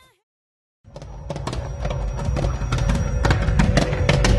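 A cut into almost a second of dead silence. Then, about a second in, live outdoor sound from a waiting crowd on a street fades up and builds: a low rumble, irregular sharp knocks and a steady held tone.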